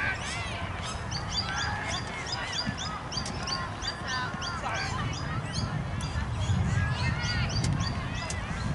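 Outdoor birds calling over one another, a rapid run of short high chirps with arching squawks among them, over a low wind rumble on the microphone that grows stronger near the end.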